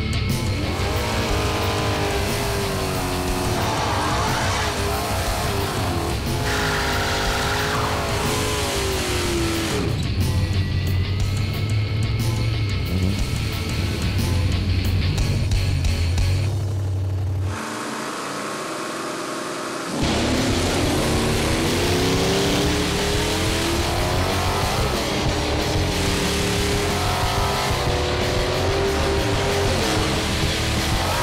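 V8 drag cars accelerating hard down the strip, engine pitch sweeping upward again and again through the gears, over rock music. About halfway through the sound briefly drops in level and loses its low end for a couple of seconds, then the engines come back.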